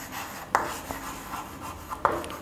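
Chalk writing on a chalkboard: soft scratching strokes, with a sharp tap of the chalk about half a second in.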